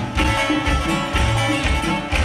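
Live band music: a sousaphone bass line pulsing under guitar and drums, with sustained melodic lines above.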